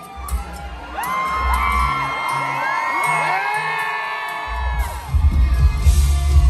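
A live band playing to a concert crowd, recorded from the audience, with the crowd cheering and whooping over it. Heavy bass and drums come in loud about five seconds in.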